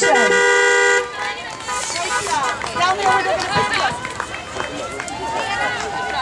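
A car horn held on a steady two-pitch tone, cutting off about a second in, followed by people's voices.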